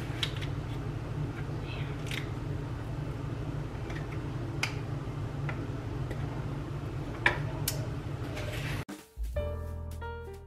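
Metal scoop clicking against a skillet and a spatula as cooked acorn squash flesh is scooped out and knocked off, with about five sharp clicks over a steady low hum. About nine seconds in, the sound cuts off abruptly and piano music begins.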